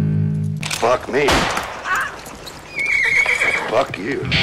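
Loud band music cuts off, then a short sampled interlude plays: voices and a high, wavering call whose pitch glides up and down in arcs, with a steady high tone near the end before the next song starts.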